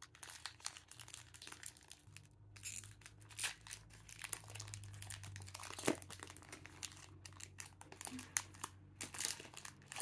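Foil trading-card booster pack crinkling and tearing as it is pulled open by hand: a faint run of crackles and rustles.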